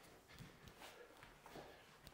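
Near silence, with a few faint soft thuds and shuffles of feet on an exercise mat during leg swings.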